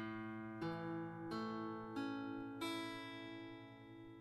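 A guitar's A major chord picked one string at a time from the fifth string down to the first: five notes, each a little higher, about two-thirds of a second apart, left to ring together and fade.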